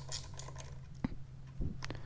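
A few faint clicks of a metal socket working the clutch-lever clamp bolt on a motorcycle handlebar, one sharper click about a second in, over a steady low hum.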